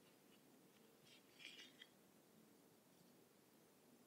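Near silence, with a faint, brief rustle of a small piece of fabric being handled about a second and a half in.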